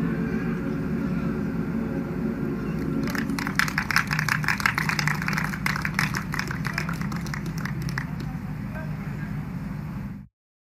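The closing notes of a national anthem, sung and played, give way about three seconds in to a round of hand clapping from the players lined up on the field. The clapping thins out and dies away near the end.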